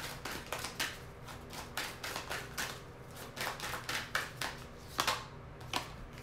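A tarot deck being shuffled by hand: a run of light, sharp card clicks and flicks, a few each second.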